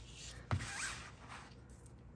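Craft knife blade slicing through a paper pattern sheet on a cutting mat. There is a sharp tick as the blade bites, about half a second in, then a short scratchy rasp of the cut that fades out after about a second.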